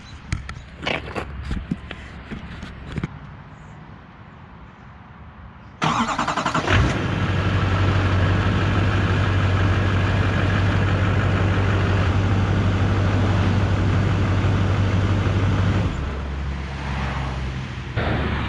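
2001 LB7 Duramax 6.6 L V8 turbodiesel in a Silverado 3500HD cold-started. After a few faint clicks it cranks for about a second, catches, and settles into a steady diesel idle. The quick start shows the fuel system now holds prime after sitting overnight, with the leaking fuel hose at the FICM replaced.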